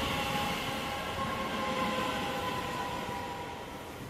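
DART electric commuter train passing alongside, a steady rolling rumble that fades slowly.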